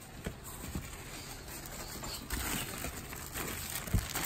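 Hands rummaging in a cardboard box: crumpled packing paper rustling and small objects knocking against each other, with a sharp knock near the end.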